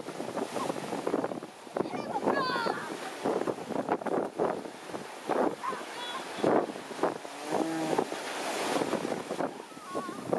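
Wind buffeting the microphone over surf, with scattered voices of onlookers. A short raised voice comes about two seconds in and another voice near eight seconds.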